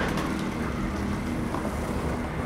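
Steady city traffic noise with a low engine hum.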